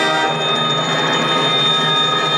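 High school concert band playing; a held brass chord gives way just after the start to a busier, ringing passage.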